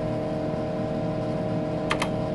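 Tektronix 4054A computer humming and whirring steadily, with a couple of sharp key clicks near the end as a key is pressed to make the program draw its line.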